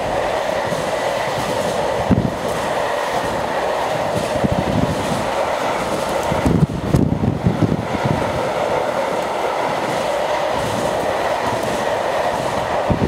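Freight train of empty timber wagons rolling past close by: a steady rumble of steel wheels on rail, with irregular low thumps from the wheels. The thumps are thickest about six to eight seconds in.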